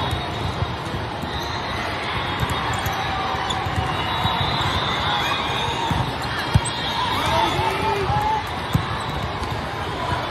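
Indoor volleyball rally: the ball struck in a few sharp smacks, the loudest a little over halfway through, with short squeaks, over the steady hubbub of a large hall full of courts.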